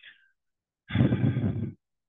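A man's loud, voiced, exasperated sigh, lasting just under a second.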